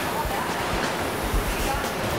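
Steady, even rushing noise of cheese-plant processing machinery, with faint voices underneath.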